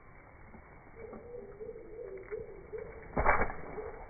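Zwartbles ewes bleating, slowed and pitched down by slow-motion playback so the calls come out as deep, wavering moans that sound like whale songs. Just after three seconds a brief, loud rush of noise cuts across the calls.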